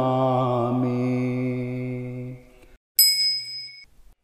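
A male chanter of a Buddhist protective chant holds the last syllable of a verse on one steady pitch, and it fades out about two and a half seconds in. After a brief silence a single bell is struck once and rings high, dying away within about a second.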